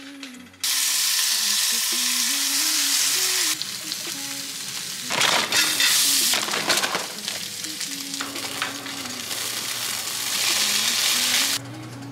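Breakfast frying in a hot skillet: bacon, diced onion and sliced hot dogs sizzling. The sizzle starts suddenly under a second in and comes in louder and quieter spells, loudest around the middle, over soft background music.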